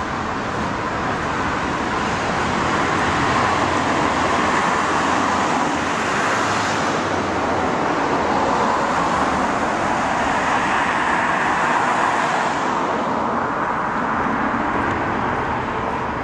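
Road traffic: cars passing on a multi-lane street, a continuous rush of tyres and engines. It swells as vehicles go by, about a third of the way in and again about three quarters through.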